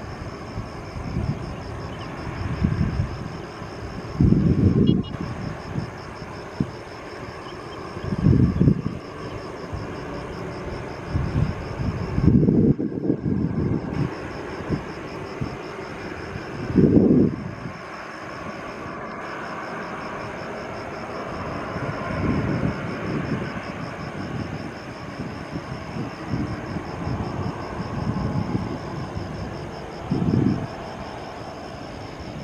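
CFM56 jet engines of a Boeing 737-800 running at low power as it rolls along the runway after landing, a steady distant jet noise. Several brief low rumbles break through it.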